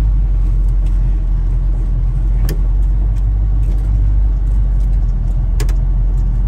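Ford 289 V8 with a two-barrel carburetor at a nice, quiet idle, in gear through the three-speed automatic as the car rolls off slowly, heard from inside the open cabin. A sharp click comes about two and a half seconds in and another near the end.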